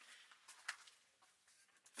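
Near silence, with two faint clicks about halfway through.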